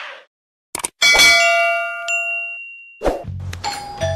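A metallic ding sound effect: a short click or two, then a struck ring with many bell-like tones that fade over about a second and a half, a higher tone chiming in partway through. Near the end a doorbell is pressed and starts to chime over a low hum.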